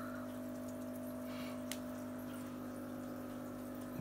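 Steady hum of running aquarium equipment, with a faint trickle of water and a couple of faint ticks in the middle.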